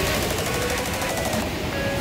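Steady rushing noise of surf and wind, crackling on the microphone, with faint music underneath.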